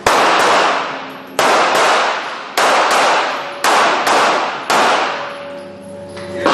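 Ruger SR9 9mm pistol firing five shots a little over a second apart, each sharp crack ringing out in the echo of an indoor range.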